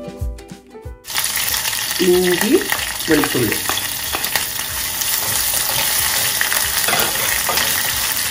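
Green chillies, then crushed ginger and garlic, sizzling in hot oil in a small saucepan. A wooden spatula stirs and scrapes the pan, with many small clicks. The sizzling comes in loud about a second in and runs on steadily.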